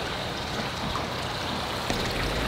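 Water running steadily, an even rushing and trickling sound.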